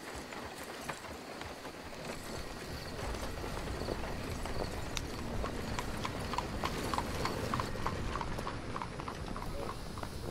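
Horse hooves clip-clopping at a steady walk, a horse-drawn carriage sound effect, over a low steady rumble. The hoof clops grow clearer about halfway through.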